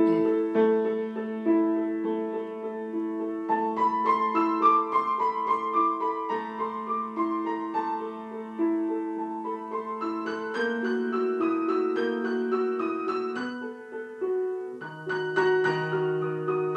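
Grand piano playing a theme in 5/8 time, the same rhythmic figure repeating over and over without a regular harmonic cycle. Higher notes join about three and a half seconds in, and a lower bass line enters near the end.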